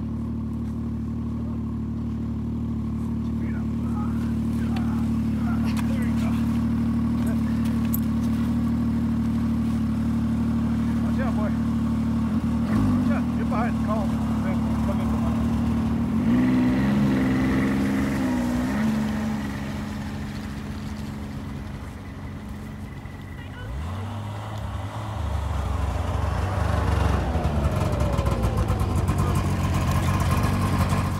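Ski-Doo Expedition snowmobile engine running steadily at idle, revving up briefly a little past halfway, dropping back, then rising again a few seconds later.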